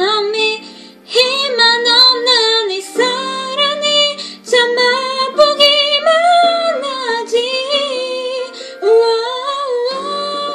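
A woman singing a Korean pop ballad solo, with short breaks between phrases about a second in and again near the middle.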